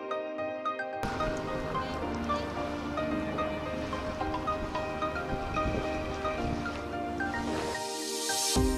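Electronic background music with short, repeated melody notes over sustained chords. A fuller layer with a low, noisy bottom comes in about a second in and drops away just before the end.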